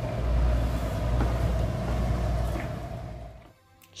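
Steady low drone of a passenger ferry's interior, with engine rumble and air-conditioning hum, fading out about three and a half seconds in.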